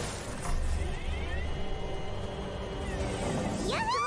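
Cartoon magic sound effect of a superhero transformation releasing: a shimmering swell over a low rumble with faint gliding tones, under the score. Near the end a high cartoon voice rises and falls in a wavering cry.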